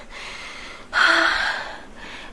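A woman's heavy, breathy sigh about a second in, with a faint voiced tone, fading away: a sound of exhaustion.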